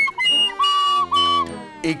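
Soprano recorder played in a few short, high, steady notes, with a fainter tone beneath that slowly falls in pitch.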